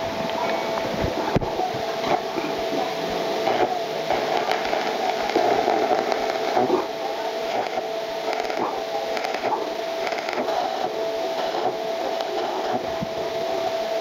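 Stick (arc) welding of small square steel tubing with a coated electrode: the arc gives a steady crackling hiss, with a steady hum underneath.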